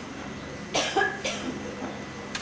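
A person coughing: a few short coughs about a second in.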